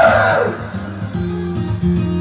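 Karaoke backing track with guitar strumming. In the first half-second a man's sung or shouted note slides down in pitch and trails off.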